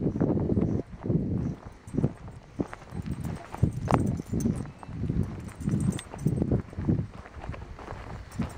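Footsteps of a person walking on sandy desert ground, a steady run of low thuds about one to two a second.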